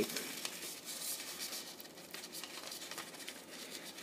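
Faint rustling and light crinkling of a square of shiny origami paper being handled and folded into an S shape to divide it into thirds.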